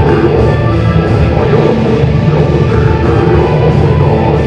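Metal band playing live and loud: distorted electric guitars and drums in a dense, unbroken wall of sound.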